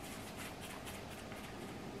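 Faint, scratchy patter of seasoning granules shaken from a plastic shaker jar.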